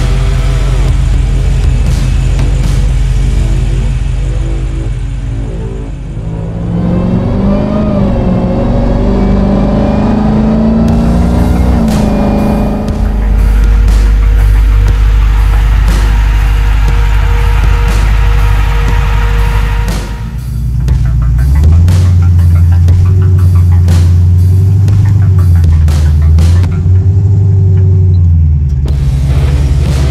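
Background music with a heavy bass beat, mixed with the supercharged Hellcat V8 of a 1968 Dodge Power Wagon revving, its pitch rising in runs through the middle of the stretch.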